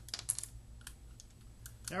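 Small plastic clicks and rattles from the keypad button set of a KeypadLinc dimmer switch as it is popped off and handled: a quick cluster of clicks at the start, then a few single clicks.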